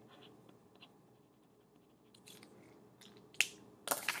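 Quiet handling of a pen and paper on a desk: a few faint ticks and short rustles, then a sharp click about three and a half seconds in and another just before the end.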